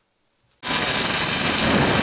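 Power grinder grinding metal with a steady, harsh noise that starts suddenly a little over half a second in, after a moment of silence.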